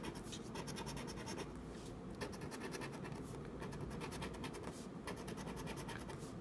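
A plastic scratcher scraping the coating off a paper scratch-off lottery ticket in rapid, steady back-and-forth strokes, uncovering the play spots.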